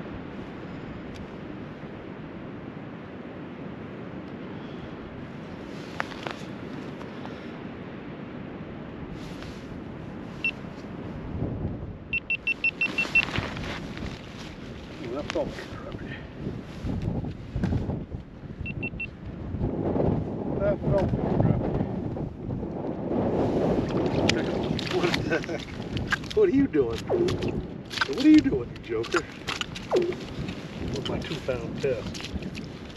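Steady wind on the microphone, then from about twelve seconds in a quick run of clicks and irregular rustling and knocks as an ice-fishing spinning reel is wound in and a fish is hauled up through the ice hole.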